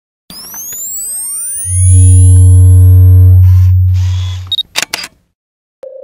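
Synthesized logo-intro sound effects: a cluster of rising whooshing sweeps leads into a very loud deep bass tone held for about three seconds, then a few noisy crackles and sharp clicks. Near the end a single sharp click sets off a steady mid-pitched tone.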